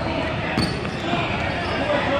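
Basketball bouncing on a hardwood gym court during play, with a steady wash of court noise and distant voices underneath.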